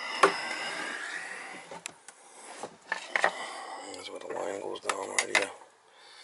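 Handling noise: rubbing with several sharp clicks and knocks, the loudest just after the start and a cluster about five seconds in.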